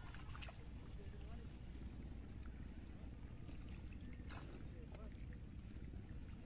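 A low steady rumble with a few brief splashes and knocks, near the start and again about four seconds in, as hands work in shallow pond water beside a wooden boat.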